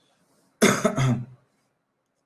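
A person coughing: a short double cough, two quick bursts about half a second in.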